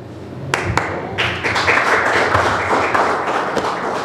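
A small group clapping, a dense patter of hand claps that builds about a second in and keeps going. A few sharp knocks and a low thump come just before it, about half a second in.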